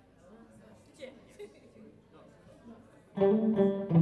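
Faint room murmur, then about three seconds in a live band comes in loudly: electric guitar chords with bass and drums, and a woman's voice starts singing.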